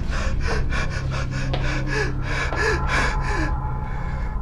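A man gasping for breath in rapid, ragged bursts, several a second, stopping about three and a half seconds in: the shaken, pained breathing of someone who has just broken under torture.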